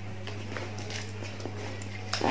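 Faint clicks and rustles of items being handled inside a handbag, over a steady low electrical hum.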